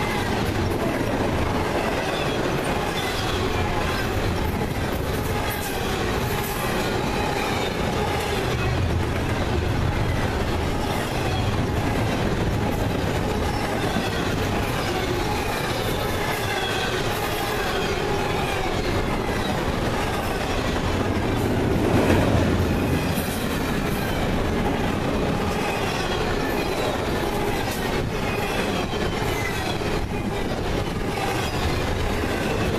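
Double-stack container freight train's well cars rolling past close by: steady steel-wheel-on-rail noise with clatter and faint falling wheel squeal. There is a brief louder rise about 22 seconds in.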